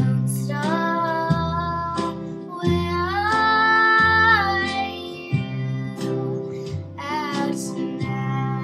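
A song with a girl's singing voice over acoustic guitar, the guitar picking out low notes steadily; one long held sung note comes about halfway through.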